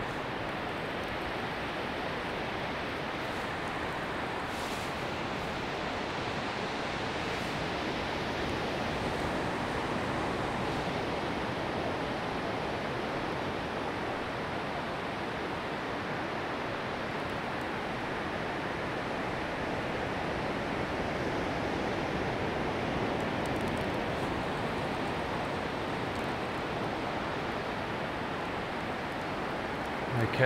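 Steady wash of surf breaking on a beach, swelling and easing gently in level.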